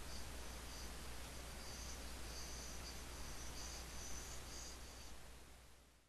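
Faint hiss and a steady low mains hum, with a faint, stop-start high-pitched chirping tone through the middle; everything fades out at the end.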